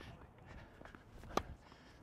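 A tennis racket striking the ball for a slice, one sharp pock about one and a half seconds in, with a few faint ticks before it.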